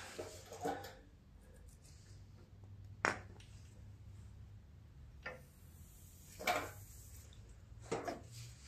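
A few faint, sharp clicks and light knocks, about two seconds apart, over a low steady hum, typical of small parts being handled in a workshop.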